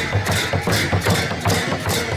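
Sakela festival percussion: a Kirati dhol drum beaten in a steady dance rhythm, with cymbal strikes about twice a second.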